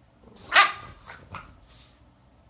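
French bulldog barking: one loud bark about half a second in, followed by a few shorter, quieter sounds.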